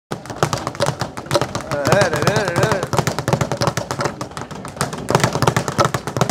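Speed bag being punched, a fast, continuous rattle of hits against its rebound platform, with a voice calling out about two seconds in.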